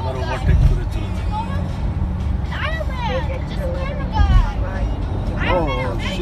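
Steady low rumble of a car driving on a highway, heard from inside the cabin, with two louder low thumps, one about half a second in and one just past four seconds. Music with a singing voice plays over it.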